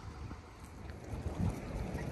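Wind buffeting the microphone: low rumbles that come and go, with a stronger gust about one and a half seconds in.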